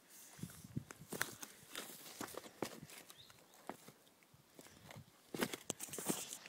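Footsteps on loose stone rubble, an irregular series of crunches and knocks.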